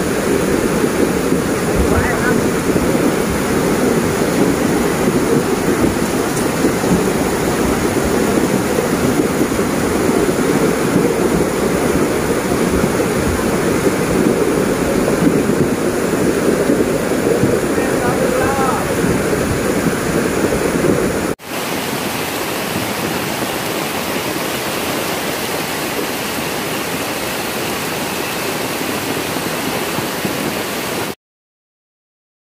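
Muddy floodwater of a river in flash flood rushing past in a steady, heavy torrent. About 21 seconds in it cuts abruptly to another recording of the flood, flatter and a little quieter.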